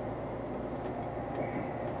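Steady road and engine noise inside the cabin of a vehicle travelling at motorway speed.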